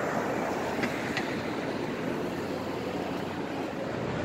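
City street ambience: a steady wash of traffic noise, with two light clicks about a second in.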